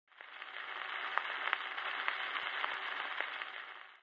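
Surface noise from a 1949 Decca 78 rpm shellac record under the stylus: a steady hiss with scattered clicks and crackles. It fades in just after the start and fades out just before the end.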